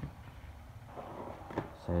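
Plastic-wrapped parcel being handled on a wooden table, with a few short crinkles of the plastic and bubble wrap in the second half. A man's voice starts right at the end.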